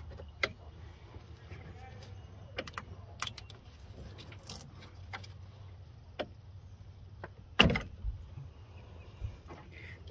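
Scattered small clicks and rattles of transmission cooler line retaining clips being popped out of the radiator fittings with a pick tool, with one louder knock about three quarters of the way through.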